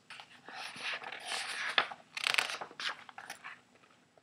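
Rustling and crunching of a hardback picture book's paper pages being handled and turned, in irregular bursts with a sharp click a little under two seconds in.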